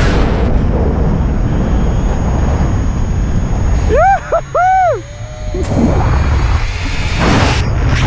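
Wind buffeting the camera microphone under an open parachute canopy, a loud, dense low rumble. About four seconds in come a few short rising-and-falling whoops.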